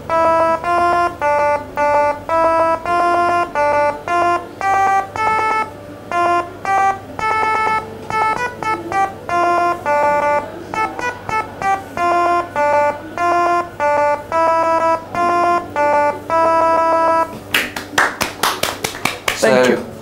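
A simple melody played note by note as electronic tones from a small Grove speaker, each note triggered by touching a lychee wired to a Seeeduino XIAO's QTouch capacitive-touch pins. The notes come mostly about two a second, with quicker runs in the middle. Near the end the tune stops and a short burst of rapid sharp clicks follows.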